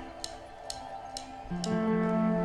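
Live band opening a song: light, high ticks keep an even beat of about two a second, then a held chord comes in about a second and a half in and the music grows louder.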